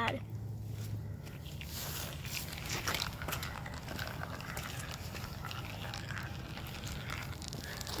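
Glass marble rolling down a plastic Hot Wheels track: a faint, steady rolling noise with a few light clicks.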